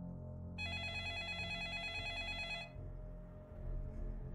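A telephone ringing: one warbling electronic ring lasting about two seconds, over a low, dark music drone.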